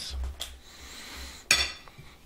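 A metal fork clinks once against a ceramic plate about a second and a half in, a sharp click with a short ring, after some faint handling noise.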